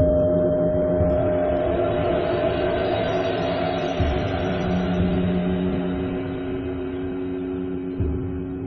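Tibetan singing bowls ringing, several steady overlapping tones sustained throughout, with a rushing noise rising over them from about a second in and fading toward the end. Two soft knocks come around the middle.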